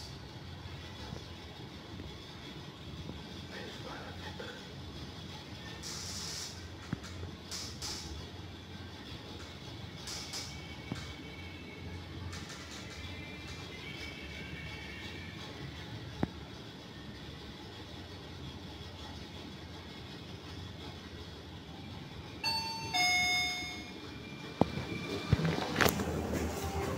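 Fujitec REXIA machine-room-less freight elevator car travelling down, a steady low hum and hiss of the ride. About 22 seconds in, a two-note falling electronic chime sounds, followed by a few clicks.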